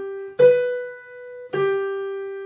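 Piano played one note at a time by a beginner, skipping up the keyboard in thirds. A note is still ringing at the start, a new one is struck about half a second in and another at about a second and a half, each sounding clearly and then fading.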